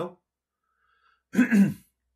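A man clearing his throat once, loudly, about one and a half seconds in, after a short silence.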